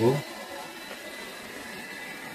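Hair dryer running steadily with its heater on: an even fan whirr with a faint thin high whine.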